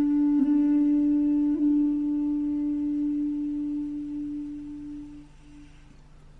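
Traditional Chinese instrumental music: one long note held on a solo melody instrument, shifting slightly twice, then fading away just after five seconds in.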